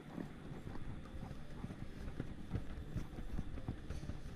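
Polyester aircraft covering fabric handled and pulled taut by hand over a wing: irregular rustling and crinkling with soft, uneven knocks.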